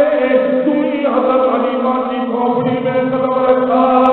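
A man's voice chanting melodically in long held notes over a mosque's public-address microphone. The pitch shifts about a second in and then holds again.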